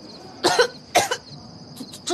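A person coughing twice, two short coughs about half a second apart.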